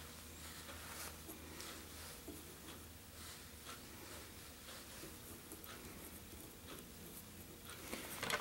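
Faint rustles and light irregular ticks of fingers handling dubbed thread while wrapping a fly's body in a tying vise, over a low steady hum.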